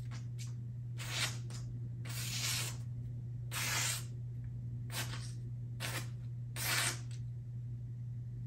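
Spyderco Shaman folding knife with a Z-Wear steel blade slicing through a sheet of paper, about eight separate cuts, each a short hiss. The edge, last sharpened over a year ago, still cuts the paper cleanly.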